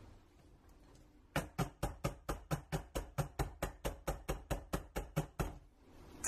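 Soap mold in its wire frame knocked repeatedly against a countertop: about twenty quick, even knocks, roughly five a second, starting about a second and a half in and stopping just before the end.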